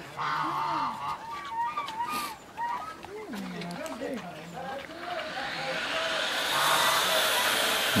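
Soft, indistinct voices with wavering pitch, then a steady hissing noise that swells from about five seconds in.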